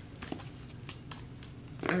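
Tarot cards being handled: a few faint, scattered card flicks and taps over a low room hum, with a woman's voice starting right at the end.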